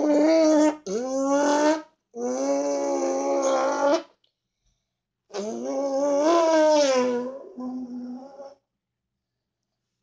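A boy's mouth imitation of a motorcycle engine, a held buzzing voiced sound made by forcing air out through the lips, in four or five bursts of one to two seconds with short pauses between. It opens with a laugh, and the attempts don't quite come off: he can't really do it.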